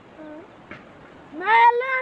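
A young boy's voice: a short faint call at the start, then one loud, long, high-pitched call near the end that rises and then falls in pitch.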